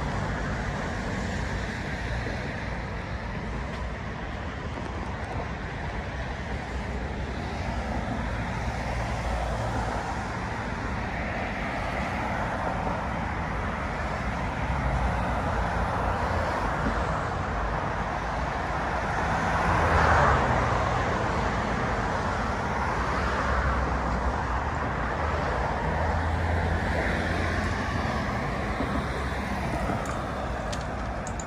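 Road traffic on a multi-lane city road: a steady wash of passing cars, swelling and fading as vehicles go by, loudest as one passes about two-thirds of the way through.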